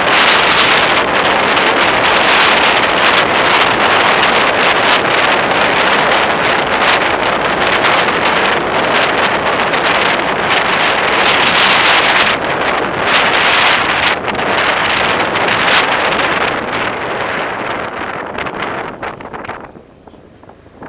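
Wind buffeting the microphone of a camera on a moving motorcycle, a loud, steady rush that eases over the last few seconds as the bike slows, then drops away sharply at the end.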